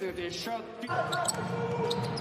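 Basketball being dribbled on a hardwood court during play, with voices in the arena and a steady tone from about a second in.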